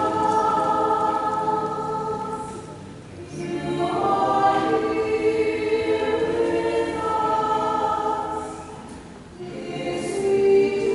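Choir singing a slow hymn in long, held phrases, with a short break between phrases about three seconds in and again near the end.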